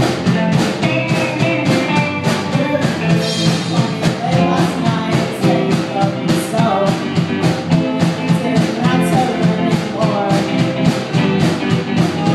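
A live band playing a ska-punk song on electric guitars, drum kit and keyboard, with a steady drum beat, heard from the audience in a hall.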